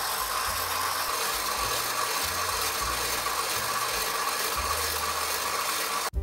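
KitchenAid 7-quart stand mixer running steadily at medium speed, its wire whisk beating egg whites into meringue in a stainless steel bowl.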